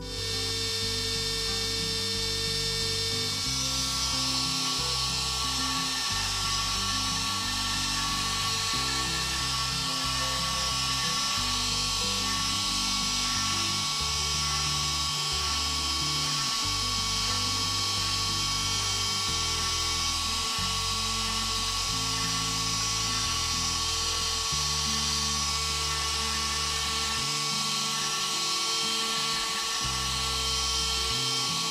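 CNC router spindle running at speed as its bit carves into a wooden coaster blank: a steady high-pitched whine that comes in suddenly at the start and holds. Background music with changing bass notes plays underneath.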